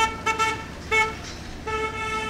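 Vehicle horn honking: several short toots on one steady pitch, then a longer held honk from about one and a half seconds in.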